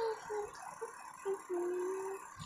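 A soft melody of a few short notes stepping down in pitch, ending on one longer, lower held note.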